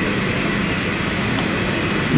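Steady background noise of a crowded hall, an even rushing haze with no single clear source.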